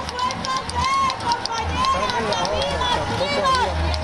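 Several high-pitched voices calling out and chattering over one another, with a low steady hum underneath.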